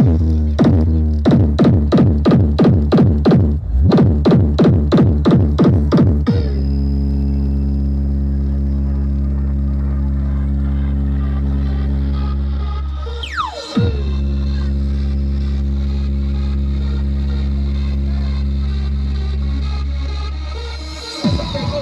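Electronic bass-test music played through a large DJ sound-system speaker stack. It opens with rapid pulsing bass hits, about three a second, for around six seconds, then holds a long deep bass tone, broken about halfway through by a quick falling sweep.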